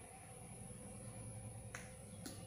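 Quiet room noise with a low steady hum, and one sharp click near the end, from a cosmetic item being handled on the table.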